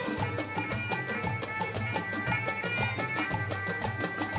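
Gulf Arabic national song played live by a traditional ensemble: hand drums beat a dense, quick rhythm under a sustained melodic line.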